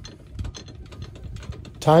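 Trailer tongue jack being hand-cranked: a run of small, quiet mechanical clicks from its gearing.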